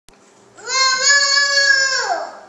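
A toddler's long, high-pitched squeal, held on one note, starting about half a second in.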